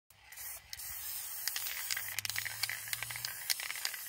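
Aerosol spray paint can spraying: a steady hiss broken by many short sputtering crackles.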